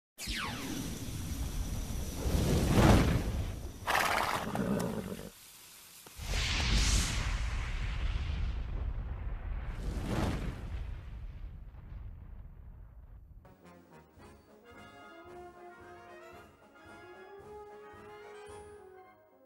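Channel logo intro: a run of loud whooshing sweeps and rumbles, with a short lull about five seconds in, fading out after about thirteen seconds into soft music with held notes over a steady low pulse.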